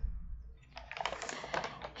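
Faint, rapid small clicks lasting about a second, starting partway in.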